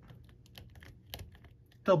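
Faint, scattered small plastic clicks as an action figure's arm is twisted at its bicep swivel joint and bent at the elbow by hand.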